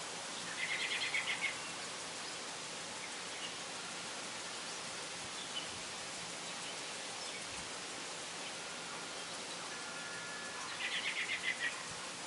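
Outdoor ambience with a steady hiss, and a small bird twice giving a quick trill of about eight short notes, once about a second in and again near the end.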